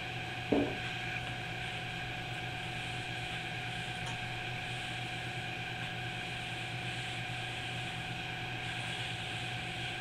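A cloth rag rubbing boiled linseed oil into a wooden hoe handle, faint under a steady background hum, with one brief knock about half a second in.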